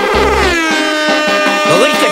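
Soca dance mix with a DJ transition effect gliding down in pitch over the music, and a short deep bass hit just after the start.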